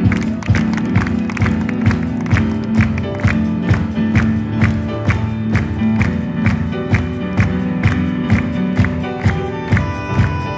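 Live jazz band with string orchestra playing an instrumental passage: piano, double bass, saxophone and strings over a steady beat of about two strikes a second, with long held low notes underneath, heard from the audience.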